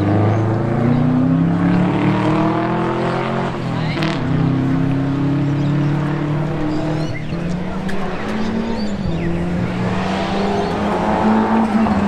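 Rally car engine out of sight, revving hard and climbing through the gears with several drops in pitch at the changes as it approaches. Sharp crackles come in near the end.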